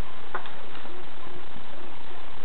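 One small click, about half a second in, as the nitro engine's piston and connecting rod are set down on cardboard, over a steady hiss.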